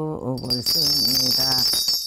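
Korean shaman's ritual bells, a cluster of small brass bells on a handle, shaken and jingling steadily from about a third of a second in, with her chanting voice underneath: she is ringing them to call on the spirits for a divine message.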